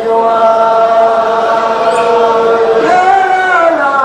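A man's voice sings a mawwal, a chanted poetic line, holding one long steady note for about three seconds. Near the end the note slides up and then falls back.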